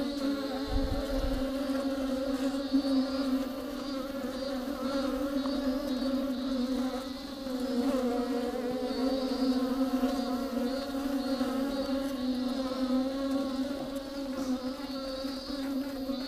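A colony of honeybees buzzing inside a hollow tree-trunk nest: a dense, steady hum whose pitch wavers as many wings beat at once. There is a brief low thump about a second in.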